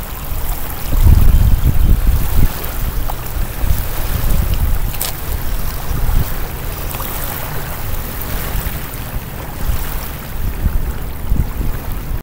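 Wind buffeting the microphone in low rumbling gusts, strongest a second or two in, over small waves lapping at a lakeshore.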